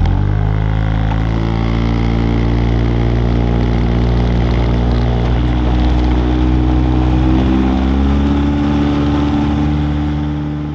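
Small fishing boat's engine running under power, its pitch rising as it speeds up just after the start and again near the end, with water rushing along the hull.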